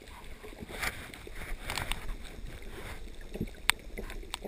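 Muffled underwater sound through a GoPro housing as a freediver ascends exhaling: bubbling and water rushing in bursts, with a couple of sharp clicks near the end.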